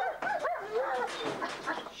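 A dog whining and yelping in wavering high notes, broken by short barks, the sound of an excited, impatient dog.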